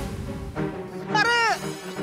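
A cat meowing once about a second in, the call falling in pitch at its end, over steady background music.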